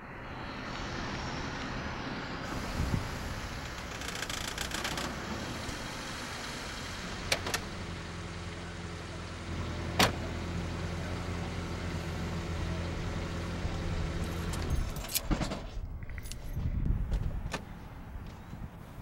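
Sounds around a parked car: a steady outdoor noise with a few sharp clicks and knocks from keys and the car's door and fittings, the loudest about ten seconds in. A low steady hum runs from about seven to fifteen seconds in and then stops.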